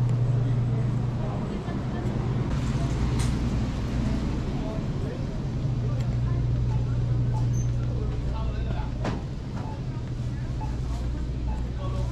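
Store interior with a steady low hum from its machinery and lighting, easing for a few seconds early on. Faint voices sound in the background.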